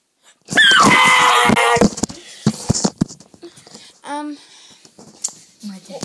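A loud, high-pitched wordless scream of about a second and a half that slides down in pitch, followed by several knocks from the phone being handled and a short vocal sound about four seconds in.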